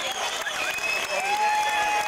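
Concert audience applauding and cheering between songs, with a long held tone coming in about a second in.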